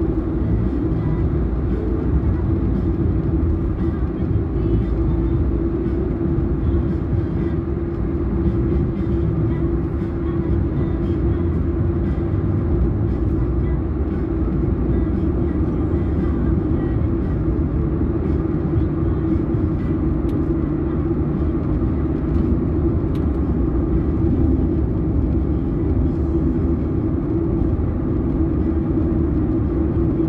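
Steady road and engine noise inside a car's cabin while cruising on a highway at about 80 km/h: a constant low rumble with a steady hum.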